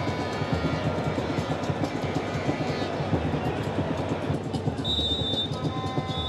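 Football stadium crowd noise with fans' music: a dense rumbling din under several sustained horn-like tones. A brighter, steady high tone comes in near the end.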